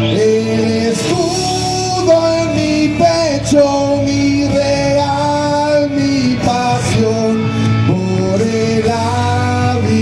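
A man singing a song live into a microphone, amplified through a PA, over instrumental accompaniment. The voice holds long notes that slide between pitches.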